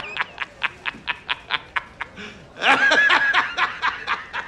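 A man laughing in quick, even bursts, about five a second, with a louder, higher laugh about two and three-quarter seconds in before the bursts resume.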